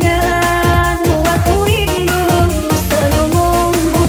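DJ-mixed electronic dance music playing loud and continuous, with a fast, steady beat and a melody line over it.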